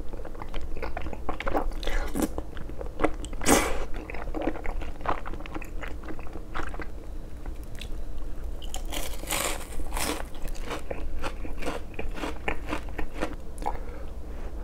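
Close-miked eating: crisp crunching bites into deep-fried battered food, mixed with wet chewing and slurping of sauce-coated rice cakes and chewy glass noodles.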